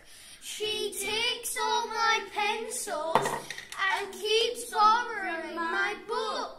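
A small group of young children chanting lines of a rhyming poem in a sing-song voice, with short breaks between phrases.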